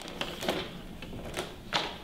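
About half a dozen scattered light clicks and taps of plastic gear being handled at a table, over faint room noise.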